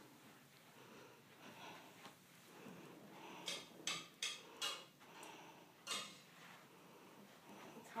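Soft, short rustles and brushes from the branches and ornaments of a decorated Christmas tree being searched by hand: a quick run of them about three and a half to five seconds in, and one more near six seconds.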